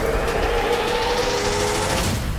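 Cinematic sound design under a film montage: a deep rumble with a sweep rising steadily in pitch and a few held tones, building toward a hit.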